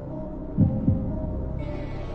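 Heartbeat sound effect: one double thump a little over half a second in, over a steady low music drone.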